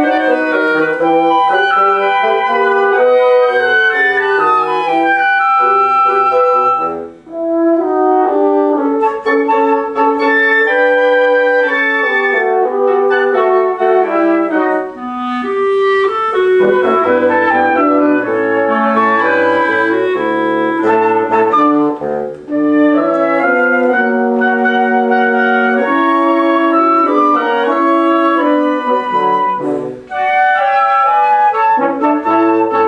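Woodwind quintet playing a chamber piece live, with flute, clarinet, French horn and bassoon. The ensemble plays continuously, with a brief break about seven seconds in.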